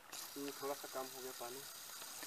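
A voice speaking briefly and faintly over a steady high hiss. The hiss comes in abruptly just after the start and cuts off just after the end.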